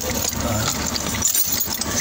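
Kia Sorento turn-signal flasher ticking fast, about four ticks a second: it is flashing faster than normal, the sign of a fault in the indicator circuit. Over it is the rattle and rustle of wires and connectors being handled under the dashboard.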